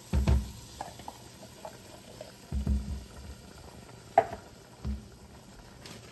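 Undrained canned beans plopping out of an upturned can into an enameled cast-iron Dutch oven in three soft, low thumps, with a few sharp clicks between them. A faint sizzle from the pot runs underneath.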